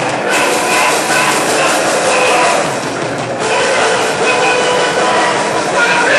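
A live rock band playing loudly, a dense, steady wall of sound with short held notes.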